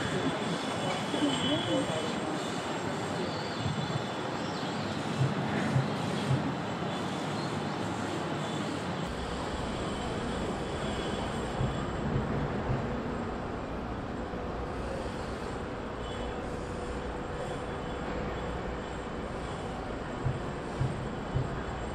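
Indistinct murmur of distant voices over a steady background hum, with a low rumble coming in about nine seconds in.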